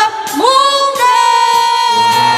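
A singer's voice glides up about half a second in and holds one long, steady note, with little or no accompaniment under it.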